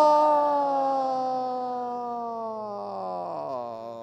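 A man's voice holding one long, drawn-out sung note that slowly falls in pitch and fades, wavering and dipping lower about three seconds in.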